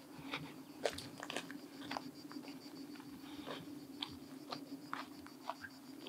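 Faint footsteps crunching on dry, dusty ground strewn with pine needles and dry brush, about two soft crunches a second, over a steady low hum.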